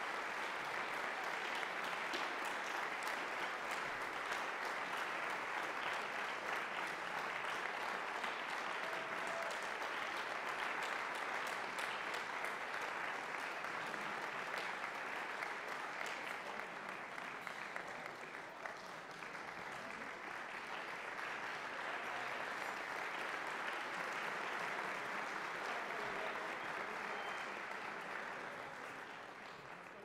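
Audience applauding steadily, easing briefly around the middle and dying away near the end.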